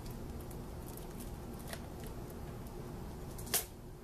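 Handling of plastic DVD cases: a few faint clicks, then one sharper tap of a case about three and a half seconds in, over a low steady room hum.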